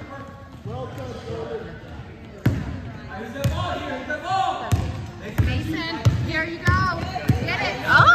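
A basketball being dribbled on a hardwood gym floor, a thud every second or so from about two and a half seconds in.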